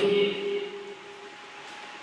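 A man's amplified voice trailing off on a held syllable, fading out about a second in, then a faint steady hiss of room and microphone noise.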